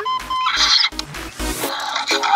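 Baby Blue velociraptor toy giving an electronic raptor screech and chirps through its small speaker as it is petted, starting about half a second in, over background music.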